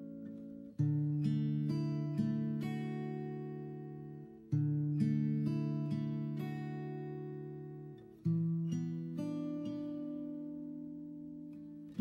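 Background music: slow acoustic guitar chords, struck about every four seconds and each left to ring out and fade.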